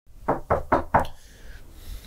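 Four quick knocks on a door, evenly spaced at about four a second.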